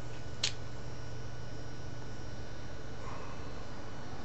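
Steady room tone, a low hum with hiss, and one brief click about half a second in.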